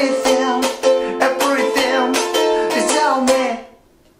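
A man singing along to his own ukulele, strummed in an eight-beat rhythm with muted chops, through the chords F, F7 and C. Near the end the playing and singing stop short for a rest.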